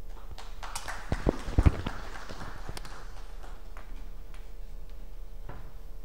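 Clip-on lapel microphone being handled and unclipped from clothing: rustling with a few heavy thumps about a second and a half in, then only a faint steady hum.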